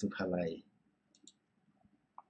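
A man's voice for the first half-second, then a couple of faint, short computer mouse clicks a little over a second in, with a few weaker ticks near the end.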